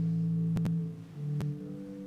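Organ playing soft, slow held chords, the notes changing about once a second. A few sharp clicks sound over it about halfway through.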